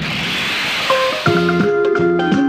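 Intro jingle music: a hissing whoosh swells up, then bright pitched notes and a steady beat come in about a second in.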